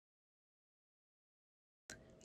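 Near silence: the sound track is muted, with faint room sound coming back just before the end.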